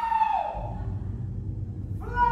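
Live stage-musical singing: a long, high held note ends about half a second in, then a low steady rumble fills the rest.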